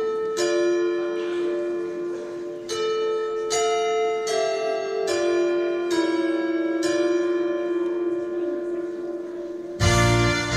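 Bell tolling in a slow, uneven sequence of single strikes, each note ringing on and overlapping the next, played as the introduction to a song. Just before the end a full band comes in loudly.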